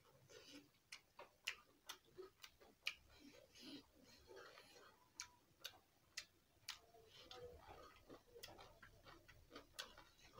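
Quiet close-up eating sounds of a person chewing with the mouth open: wet lip smacks and sharp mouth clicks, irregular, about one or two a second.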